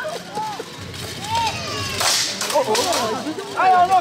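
A single sharp strike about two seconds in as plate-armoured behourd fighters engage, followed by a few lighter knocks, over scattered voices, with a shout of "Allez" near the end.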